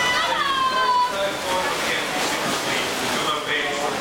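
Spectators shouting, loudest in the first second, over the steady splashing of swimmers racing freestyle.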